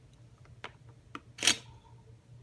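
Handling noise: two light clicks, then a brief louder scrape about one and a half seconds in, over a faint steady hum.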